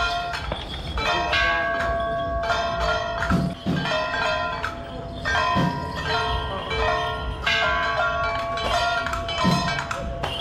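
Temple procession music with ringing metal percussion: bell-like tones and struck clangs overlapping continuously. A low sliding stroke recurs at about three and a half, five and a half and nine and a half seconds in.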